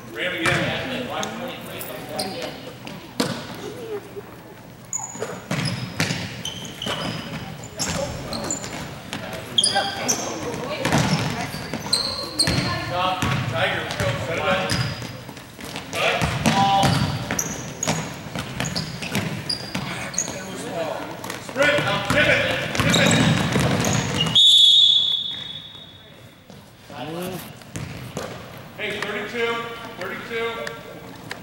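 Basketball game on an indoor hardwood court: the ball bouncing, short high sneaker squeaks, and players and spectators calling out. Near the end a referee's whistle blows once, held for over a second, and the court goes quieter after it.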